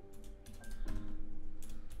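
Typing on a computer keyboard: a run of irregular keystroke clicks, over background music with long held notes.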